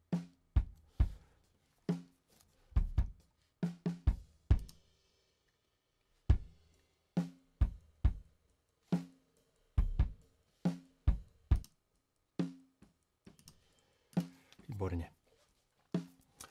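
Multitrack drum kit recording playing back in a loop: kick drum thumps alternating with snare hits that carry a short pitched ring, with a pause of about a second and a half near the middle where the loop restarts.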